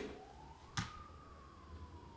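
A faint single tone that rises over about the first second, then slowly falls, like a distant siren wail, with one sharp click a little under a second in.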